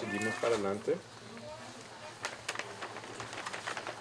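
A person speaking for about a second, then a quiet pause with a few faint clicks.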